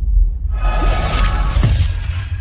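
Logo intro sting: a deep bass bed under a shattering, crackling sound effect starting about half a second in, with a sharp hit near the end that leaves ringing tones.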